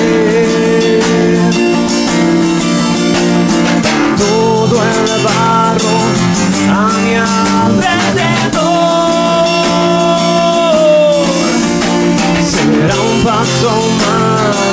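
Live acoustic band playing a song: acoustic guitar and electric bass guitar, with a voice singing long held notes over them.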